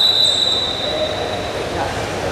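A steady high-pitched tone, held for nearly two seconds and stopping just before the end, over the murmur of an arena crowd.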